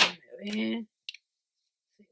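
A short murmur of a woman's voice, then a light click of a metal lipstick tube being handled about a second in.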